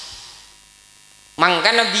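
Faint steady mains hum through a public-address system during a break in a man's amplified speech, which resumes about one and a half seconds in.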